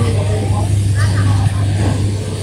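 Busy market ambience: indistinct voices of people talking over a steady low hum.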